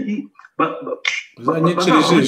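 A man speaking in short phrases separated by brief pauses.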